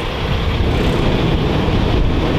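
A steady low rumble of outdoor background noise, with no distinct events.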